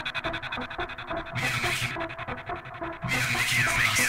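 Techno track in a breakdown with the kick drum out: rapid ticking percussion runs on, a short scratchy swish of noise comes about a second and a half in, and a louder wobbling, scratchy noise sound enters about three seconds in.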